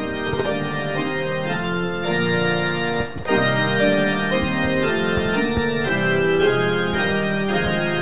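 Organ-voiced keyboard playing slow, held chords, with a brief break about three seconds in.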